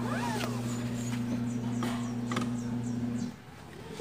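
Car seatbelt warning sounding as a steady low tone, then cutting off suddenly about three seconds in as the seatbelt buckle is latched: the warning circuit now senses the belt is fastened. A short high gliding call rises and falls near the start.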